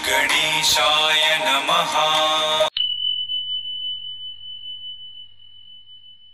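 Intro music, a voice over steady held notes, stops abruptly about two and a half seconds in. A single high ding follows, ringing on and fading slowly.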